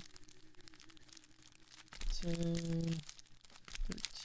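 A trading-card pack's wrapper crinkling and tearing as it is handled and opened by hand, heard as a scatter of small irregular crackles.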